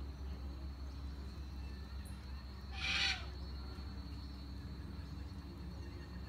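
A single short bird call about halfway through, over a steady low hum and a constant high, thin tone.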